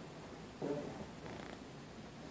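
A man's low voice: a short murmured utterance about half a second in, with a fainter breathy sound soon after.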